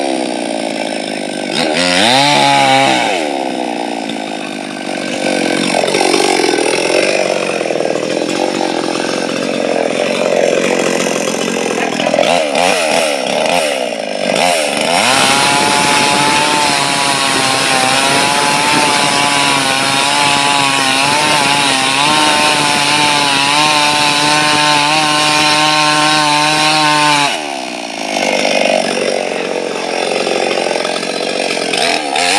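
Two-stroke chainsaw cutting through a dead coconut palm trunk, its engine speed sagging and recovering under load, then holding high and steady. A few seconds before the end the throttle is let off and the pitch drops.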